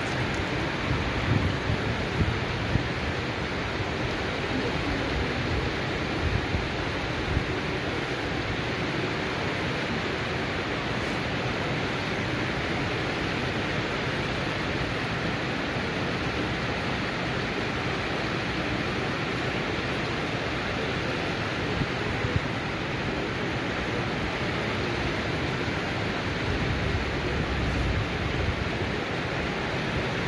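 Floodwater rushing across a street: a steady, even rushing hiss, with a few brief low bumps near the start and about a fifth of the way in.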